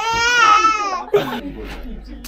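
A four-month-old baby's high-pitched squeal, one long call with a rising-then-falling pitch that lasts about a second, then cuts off to quieter room sounds.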